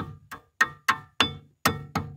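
A hammer tapping seven times on the rear brake caliper of a 2009 Mercedes CLS 550, about three strikes a second, each a sharp knock with a short ring. It is knocking the caliper's spring clip back into place.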